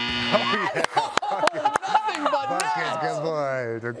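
A game-clock buzzer sounds as the clock runs out, a steady tone that cuts off about half a second in. Then people shout and whoop in excitement, with a few sharp knocks among the voices.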